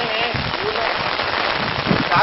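Hand hoes chopping and scraping into hard, dry soil, a run of short dull knocks under a steady loud hiss.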